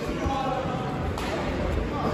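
Indistinct voices and chatter echoing in a large sports hall, with a single sharp knock about a second in and a low rumble after it.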